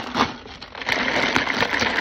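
Ice rattling in a plastic cup of energy drink as the cup is moved close up against the microphone, a dense crackling rattle that starts about a second in.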